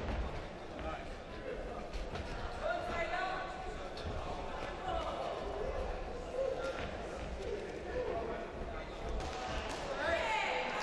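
Voices of spectators and cornermen calling out during a boxing bout, over a steady hall rumble. Dull low thuds come from the boxers' feet and punches.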